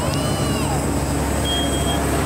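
Smoke alarm in a smoke-filled room giving a high steady beep about one and a half seconds in, set off by the smoke of the growing fire, over a steady low rumble.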